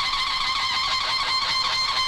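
TV channel ident sting: sustained, shimmering electronic tones held steady over a sparkling texture.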